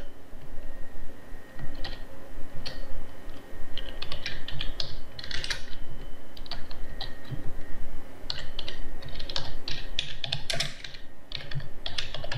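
Typing on a computer keyboard: runs of quick, irregular key clicks with short pauses between them.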